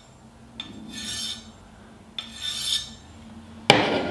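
A Kai Shun kitchen knife's edge scraped hard across a ceramic rod to blunt it: two gritty, high-pitched scrapes, each under a second, about a second and a half apart. Near the end comes a sharp knock, louder than the scrapes.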